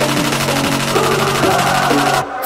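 Hip hop track with a steady beat and held low notes, in a short gap between rapped lines.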